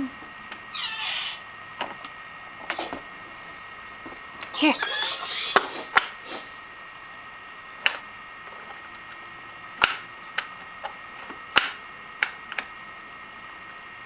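Sharp plastic clicks, about a dozen at irregular intervals, from a toddler pressing and flipping the parts of a plastic activity toy barn.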